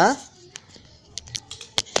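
A quick run of sharp clicks, about six in the last second and a half, from handwork on a folded young coconut-leaf (janur) strip.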